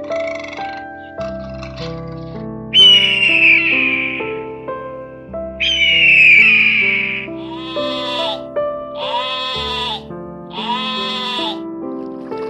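Background music with animal calls laid over it: two long, loud, falling screams, then three shorter calls that rise and fall, in quick succession.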